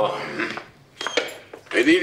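A few sharp, separate clicks, one with a brief ringing: footsteps and a walking cane striking a stone-tiled floor.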